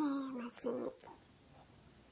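A woman's voice trailing off at the end of a scolding remark, one drawn-out syllable falling slightly in pitch and a short murmur after it, then silence for the second half.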